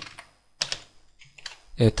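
A few computer keyboard keystrokes, clustered about half a second in, as two slashes are typed to comment out a line of JavaScript code.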